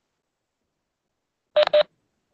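Two short electronic beeps in quick succession, about a second and a half in, after near silence.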